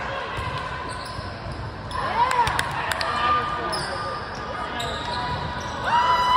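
Volleyball rally on a hardwood gym court: a few sharp smacks of the ball being hit, bunched about two to three seconds in, over sneakers squeaking on the floor and players' voices calling.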